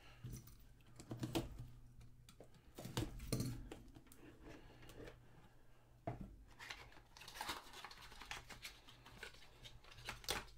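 Handling a cardboard trading-card hobby box: scattered light taps, scrapes and rustles as the lid is lifted off and the card inside is slid out, with a faint crinkle of plastic wrap.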